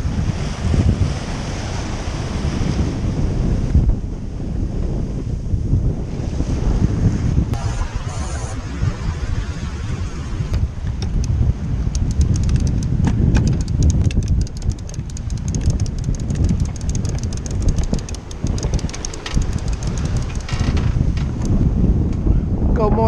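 Strong wind buffeting the microphone over the rush and splash of water along a sailboat's hull in choppy water. In the second half a fast, faint clicking runs under it.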